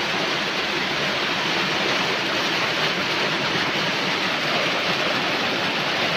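Heavy rain pouring down steadily, an even, unbroken rush of water.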